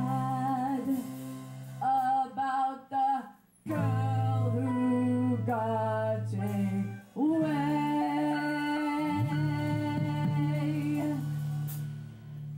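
A woman singing live into a microphone with a band playing behind her, holding long notes over steady low tones. The music drops out for a moment about three and a half seconds in and again about seven seconds in.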